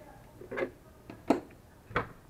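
A few short knocks and clicks of a rubber-tyred chassis wheel and a steel digital caliper being handled and set down on a wooden workbench, the loudest just past the middle.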